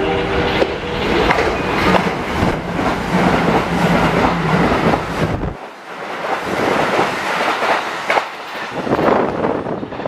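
Kintetsu limited express train running through a station at speed, its wheels clattering rhythmically over the rail joints. The deep rumble drops away about halfway through, while the joint clatter goes on almost to the end.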